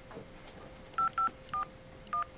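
Three short touch-tone keypad beeps starting about a second in, a quarter to a third of a second apart. Each beep is two tones sounded together, as when numbers are keyed into a phone to put them in.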